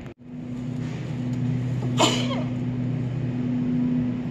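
A woman sneezing once into her shirt about two seconds in, a short muffled burst, over a steady low electrical hum.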